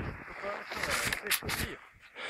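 Wordless voice sounds and loud breathy noise from a person trudging through deep snow, fading out just before the end.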